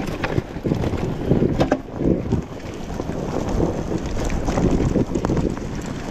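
Dirt bike riding over a rocky forest trail, its engine largely masked by heavy wind buffeting on the microphone, with scattered clicks and knocks of stones under the tyres.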